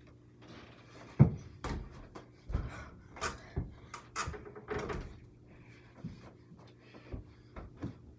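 A run of irregular thumps and knocks, about two a second: a small rubber ball bouncing and striking an over-the-door mini basketball hoop and the door it hangs on, with footsteps.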